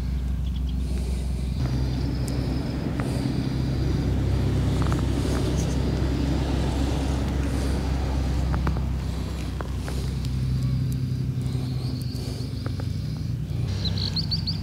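Motor traffic on a main road: a steady low engine rumble that grows stronger about two seconds in and holds.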